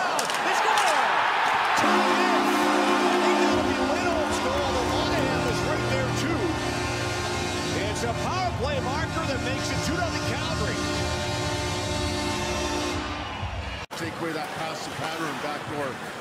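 Arena crowd erupting for a home goal, then the goal horn sounding a steady chord of several tones for about twelve seconds over the cheering and the goal music. It cuts off abruptly near the end.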